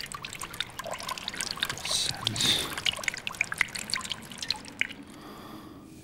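Water dripping and trickling in quick, irregular drops, dying away about five seconds in.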